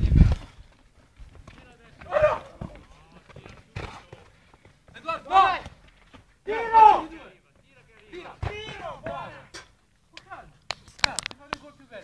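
Players shouting and calling to each other during an outdoor football game, with a few sharp thuds of the ball being kicked; the loudest is a heavy thump right at the start.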